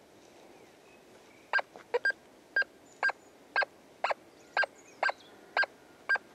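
Nokta Force metal detector giving a target signal: short, identical pitched beeps about two a second, starting about one and a half seconds in, each as the search coil sweeps over a metal target in the ground.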